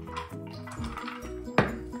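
Stainless steel mixing bowl giving one sharp clink about one and a half seconds in, as raw chicken thighs are kneaded with salt in it by hand. Background music with steady notes plays underneath.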